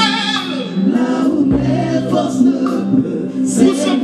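Live gospel worship song: a male lead singer sings over backing vocalists and electronic keyboard, with a sustained low bass note coming in about a second and a half in.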